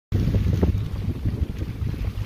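Wind buffeting the microphone: a loud, low rumbling noise that rises and falls.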